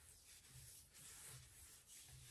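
Very faint rubbing of skin on skin as body butter is worked into the back of a hand, in repeated soft strokes; otherwise near silence.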